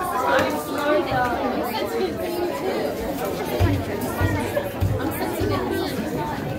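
Audience chatter: many overlapping voices talking at once in a large hall, with a few low thumps in the second half.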